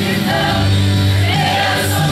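Mixed choir of men and women singing a gospel song together, holding long notes.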